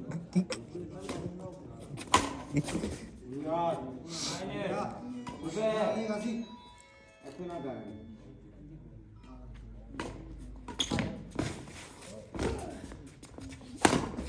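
Men's voices talking and calling out on a badminton court, with several sharp cracks of racquets striking a shuttlecock, the last just before the end.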